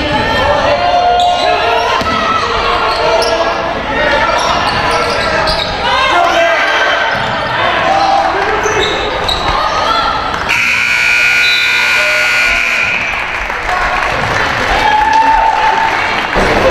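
Gym scoreboard buzzer sounding one steady blast of about two and a half seconds, starting about ten seconds in: the horn for the end of the first half. Before it, players and spectators shout and call out over a basketball bouncing on the hardwood court.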